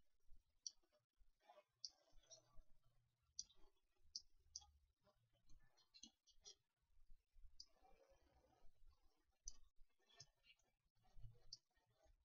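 Faint, irregular clicks of a computer mouse, some in quick pairs, over near-silent room tone.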